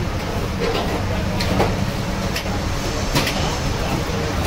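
Steady low background rumble with a few brief clicks and taps scattered through it.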